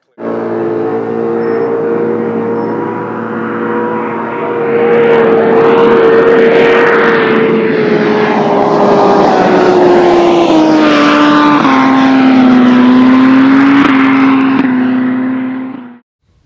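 Land-speed racing motorcycle engine at high speed on a run across the salt, loud and steady at first and growing louder, then dropping steadily in pitch in the second half as it goes by; the sound cuts off suddenly at the end.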